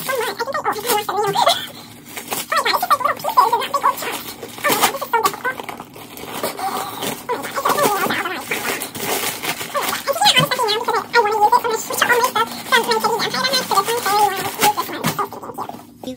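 Paper packing stuffing rustling and crinkling in short bursts as it is pulled out of a new mini backpack, under an unintelligible voice-like sound.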